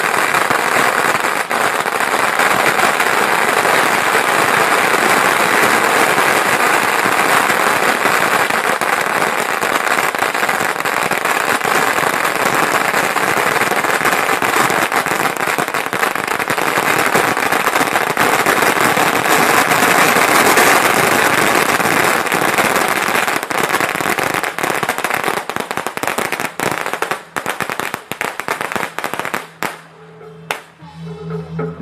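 Long strings of red paper firecrackers exploding on the road in a loud, continuous, rapid crackle. The crackle thins into scattered separate bangs over the last several seconds and stops just before the end.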